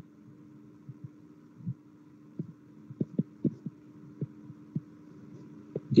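Steady low hum on an online voice-chat microphone line, with a scattering of soft, short low thumps, most of them in the second half.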